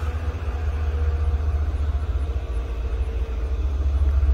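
Low, steady rumble of a running vehicle engine, with a faint steady hum through the middle.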